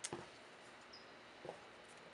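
Quiet room tone with a sharp click at the start and one brief faint rising sound about one and a half seconds in.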